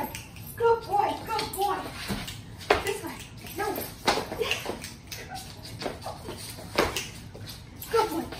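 A woman's voice talking to a dog, words unclear, with several sharp knocks of feet and paws on a hardwood floor.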